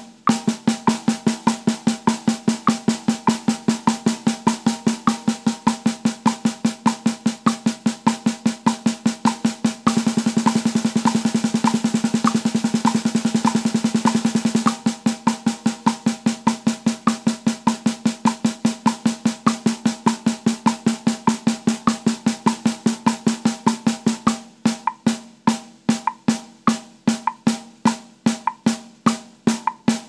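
Snare drum played with sticks in even single strokes on triplet subdivisions at 100 BPM, over a metronome click. Eighth-note triplets speed up to sextuplets about ten seconds in and drop back to eighth-note triplets some five seconds later. Near the end they slow to quarter-note triplets.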